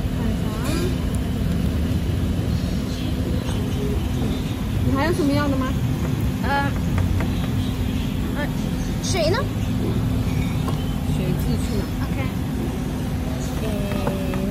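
Steady low rumble of road traffic, with snatches of indistinct chatter from people nearby a few times.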